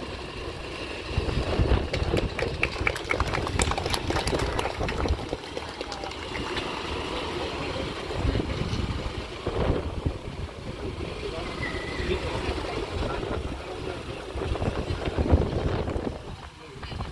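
Scattered applause from a small crowd for a few seconds after a speech ends. After it comes steady city-street background: a low rumble of traffic and indistinct talk from people nearby.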